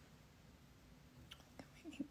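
Near silence: room tone with a faint steady hum and a few faint clicks in the second half, just before speech resumes at the very end.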